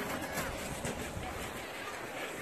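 Quiet, steady outdoor background hiss with faint, distant voices.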